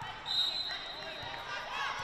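Referee's whistle: one steady, shrill blast lasting a little over a second, signalling the serve, followed near the end by sneakers squeaking on the hardwood court.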